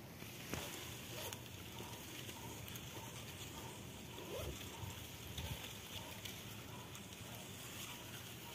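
Faint outdoor ambience with a few light clicks and rustles among dry leaves.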